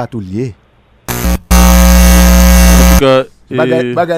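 A loud, steady electronic buzz. A short burst comes about a second in, then a held buzz of about a second and a half that cuts off suddenly.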